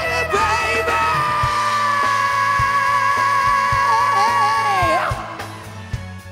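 Male vocalist belting one long held high note over a live band with steady drum beats; about five seconds in the note wavers, falls and breaks off, and the band plays on.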